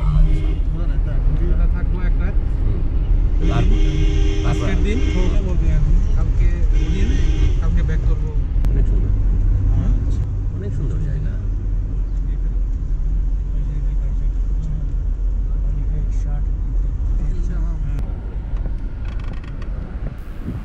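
Steady low engine and road rumble of a moving car heard from inside its cabin.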